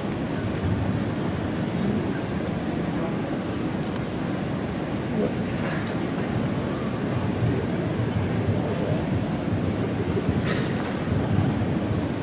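Indoor arena ambience: a steady murmur of a large crowd of spectators echoing around the hall, with a few faint knocks.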